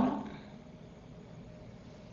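A man's voice trails off at the start, then faint, steady background hiss, with no distinct sound standing out.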